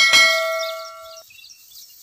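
Notification-bell sound effect: a single bright metallic ding that rings on several steady tones and cuts off abruptly a little over a second in.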